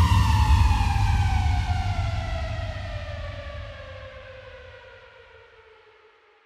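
The electronic house track's closing note: a sustained synth tone gliding slowly downward in pitch over a low bass rumble, fading out steadily until it is gone at the end.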